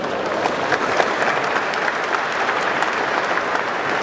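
Audience applauding steadily: many hands clapping at once.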